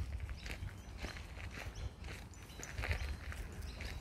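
Faint footsteps scuffing on a dirt bush track, irregular and light, over a low steady rumble.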